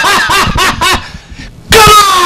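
A man laughing loudly into a stage microphone, a quick run of short "ha-ha" syllables. After a brief lull near the end, he breaks into a loud, drawn-out shout that falls in pitch.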